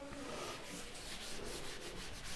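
Faint rubbing of a duster wiped back and forth across a chalkboard, erasing chalk.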